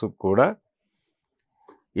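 A man's voice speaking Telugu for about half a second, then a pause of near silence with one faint click before he speaks again.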